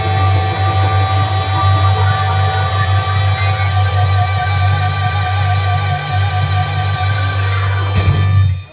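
Blues-rock song playing from a 7-inch vinyl single on a turntable, at its close: one long held note over a steady bass note, with a vibrato coming into the held note about halfway through.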